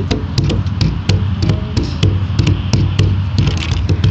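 A picnic table being shaken and knocked close to the phone, giving a quick, irregular run of loud wooden-sounding knocks and rattles, about three or four a second, over a steady low rumble.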